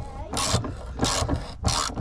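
Ratchet wrench with a 19 mm socket turning a spare-wheel carrier bolt in short strokes, three rasping ratchet runs about two-thirds of a second apart.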